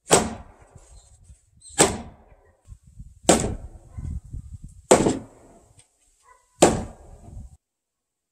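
Five hard knocks, evenly spaced about one and a half seconds apart, each with a short ringing tail, over a faint steady high whine; the sound stops abruptly shortly before the end.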